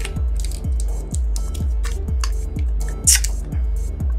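Background music with a steady bass-drum beat about twice a second, over short sticky crackles of melted, gummy tape being peeled from a puppet's mouth.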